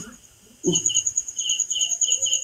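Cricket chirping: a fast, steady high trill with a lower chirp repeated every fraction of a second, starting about half a second in.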